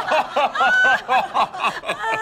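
Several people laughing loudly together at a punchline, their voices overlapping in quick, evenly repeated 'ha' pulses, about five a second.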